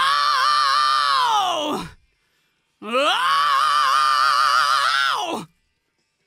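Unaccompanied male rock vocal: two long, high sung "oh" notes, each sliding up into a note held with vibrato and then falling off. The second starts about three seconds in and is held longer than the first.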